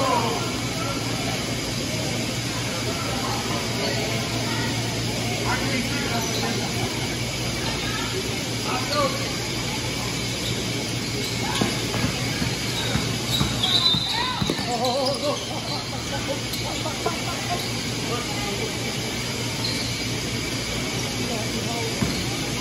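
Basketball game sounds in a large gym: indistinct voices of spectators and players, a ball bouncing on the hardwood court and a brief shoe squeak about two-thirds of the way through, over the hall's steady reverberant hum.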